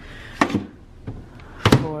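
Microwave oven door opening and then shutting, two sharp knocks about a second apart with the second, the door latching, the louder.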